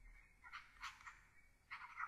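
Faint scratching of a stylus writing on a tablet: a few short strokes, spaced out, with more of them near the end.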